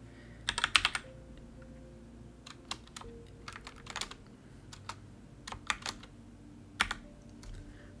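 Typing on a computer keyboard: a quick run of keystrokes about half a second in, then scattered single key presses through the rest.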